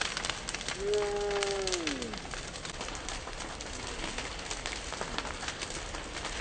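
Fireworks crackling with many scattered pops. About a second in comes a pitched, whistle-like tone that holds briefly and then falls away in pitch.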